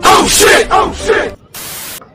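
A person's voice in a few short syllables that swoop up and down in pitch, followed about a second and a half in by a steady static-like hiss that cuts off abruptly.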